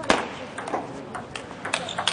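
Table tennis ball clicking sharply six or seven times at uneven intervals as it is struck and bounces on the table, with a low murmur of background voices.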